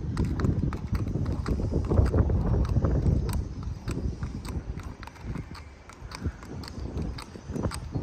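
Hoofbeats of an off-track Thoroughbred horse walking on a hard-packed dirt and gravel lane, a steady clip-clop of several sharp strikes a second, louder at first and fainter from about halfway through.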